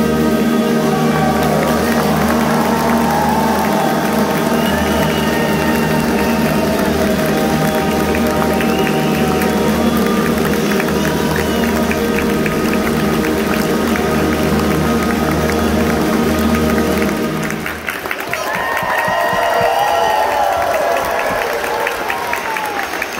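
A middle-school concert band of brass, woodwinds and percussion plays the close of a piece on long sustained chords, cutting off about seventeen seconds in. Audience applause follows.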